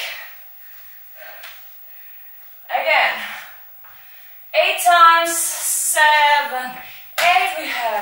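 A woman's voice: a short breathy sound about three seconds in, then drawn-out vocal sounds from about halfway, falling in pitch, with no clear words.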